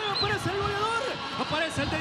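Speech: a male commentator's excited, raised voice calling a football goal.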